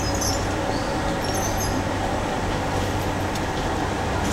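Steady city street noise, a continuous traffic rumble, with a few faint high chirps in the first half.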